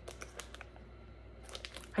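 Faint crinkling of plastic packaging being handled, in a few short rustles just after the start and again near the end.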